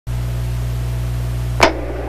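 Steady electrical hum and hiss from an old recording, with one sharp click about one and a half seconds in, after which the hiss drops.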